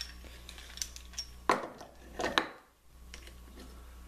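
Metal DowelMax dowelling jig being handled and repositioned: a handful of light metallic clicks and clinks from its parts, the loudest about one and a half seconds in.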